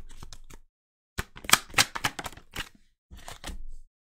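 Oracle cards being shuffled and handled, a run of sharp clicks and snaps in three short spells, as a card is drawn and laid on the table.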